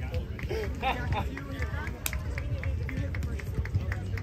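Background chatter of several distant voices over a steady low rumble. About halfway through there is a sharp click, then a run of quick ticks at about four a second.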